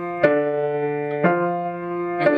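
Grand piano notes struck singly, about one a second, each left to ring into the next: the slow one-note-per-beat tremolo exercise on the D minor arpeggio.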